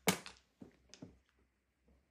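Mahjong tiles clacking against each other as a player's row of tiles is rearranged and pushed into line: one sharp clack at the start, then a few lighter clicks within the first second.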